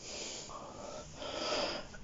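A person breathing close to a phone microphone: two breaths, the second louder, near the end.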